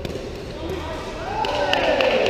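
Sharp knocks of a sepak takraw ball being kicked during play, with a player's voice calling out loudly from about halfway through.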